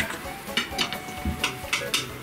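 A knife cutting a mamalyga in a deep plate, with a few light clicks and scrapes of the blade against the plate.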